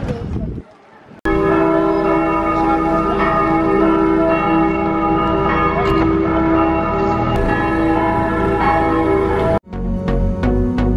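Church bells ringing, a dense clang of many overlapping tones. They start abruptly a little over a second in and cut off suddenly just before the end.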